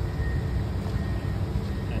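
Komatsu PC490HRD-11 high-reach demolition excavator's diesel engine running with a steady low rumble. A faint, thin high whine sits over it during the first second or so.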